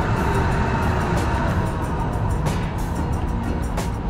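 A Budapest electric tram passing close by, a steady rumble of its wheels on the rails, with background music underneath.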